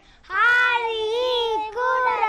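Young children singing together in high voices into a microphone: after a short pause comes one long held note, then a shorter phrase near the end.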